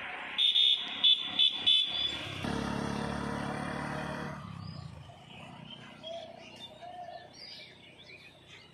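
A vehicle horn gives a quick run of short high beeps, then an engine rumble swells and fades away over a couple of seconds as the vehicle passes. Birds chirp faintly afterwards.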